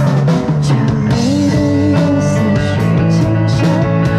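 Live alternative rock band playing an instrumental passage on electric guitars, bass guitar and drum kit. Sustained guitar notes ring over steady drum and cymbal hits.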